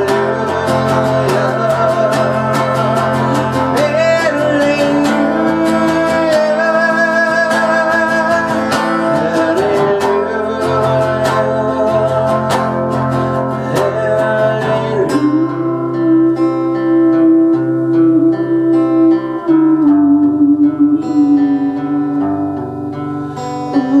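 A man singing with a strummed acoustic guitar. The strumming is dense for the first two-thirds, then thins to sparser, lighter strokes under long held sung notes.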